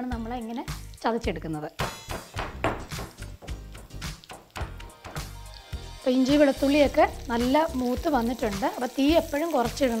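A wooden spatula stirring and scraping in a pan of frying food, with sizzling oil. Background music runs throughout, with a melody loudest from about halfway through.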